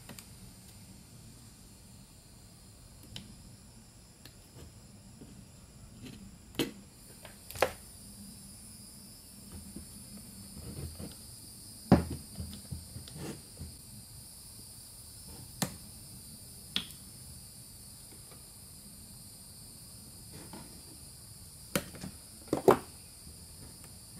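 Scattered sharp clicks and taps, about a dozen spread irregularly over a faint steady hiss, from hands working a rubber valve cover gasket into the groove of a plastic valve cover and handling diagonal cutters on a wooden bench.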